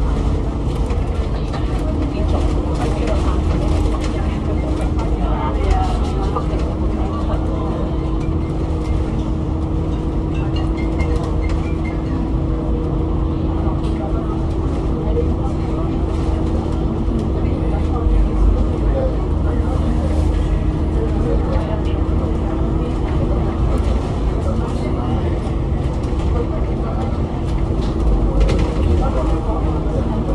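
Alexander Dennis Enviro500 MMC double-decker bus, with its Cummins ISL8.9 diesel and Voith DIWA gearbox, heard from inside the bus while it is on the move: a steady low rumble with a steady whine running through most of it.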